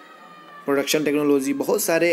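A man speaking Hindi in a voice-over, after a short pause at the start.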